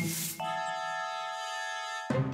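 Cartoon sound effect: a short whooshing swish, then a steady chord of several held tones that lasts about a second and a half and cuts off suddenly.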